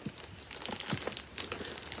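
Packaging of a cross stitch kit crinkling as it is handled: a run of irregular small crackles.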